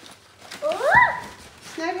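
A high-pitched voice gives one rising excited squeal, sliding up in pitch and peaking about a second in; speech follows near the end.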